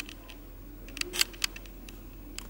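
Light clicking rattle from the small bars on each side of a handheld camera shaking against its body, a few sharp clicks around the middle; the noise comes from loose parts on the camera itself.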